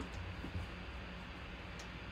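Quiet room tone: a low steady hum with a couple of faint ticks.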